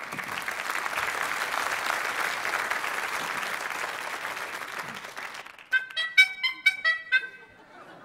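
Audience applause that fades, then a quick run of about six short honks at different pitches from the rubber-bulb horns sewn onto a suit, a 'klaxophone', squeezed one after another over about a second and a half near the end.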